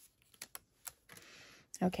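Die-cut paper butterflies being popped out of their sheet and laid down: a couple of quiet ticks, then a short papery rustle of about half a second.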